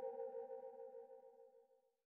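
The closing fade-out of a synthwave track: a held synthesizer chord with a soft pulsing low note underneath dies away to nothing near the end.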